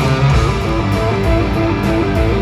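Live rock band playing in an arena, electric guitars to the fore over bass, working through a repeating riff.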